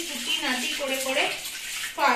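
Kitchen tap running into a sink as dishes are washed, with a woman's voice over it.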